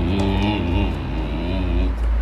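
Husky making a long, low, wavering howling grumble that dips slightly in pitch and ends near the end.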